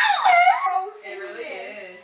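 Women laughing, one voice a high shriek that glides up and down, cut off suddenly under a second in; quieter voices follow.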